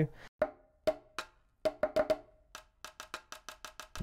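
Percussive hits from the sampled pipa (Chinese lute) Kontakt instrument's 'Pipacussion' patch, played from a keyboard: short, sharp strikes, each with a brief pitched ring. The first few hits are spaced out, then a quicker run of hits follows in the second half.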